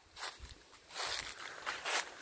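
Footsteps walking through grass, a few soft scuffing steps.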